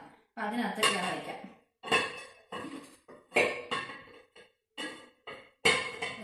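Glass tumblers and glass bowls clinking and knocking as they are handled and set down on a table: a string of sharp, irregular clinks, each ringing briefly.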